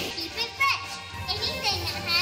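Young children's voices through stage microphones, with music playing underneath.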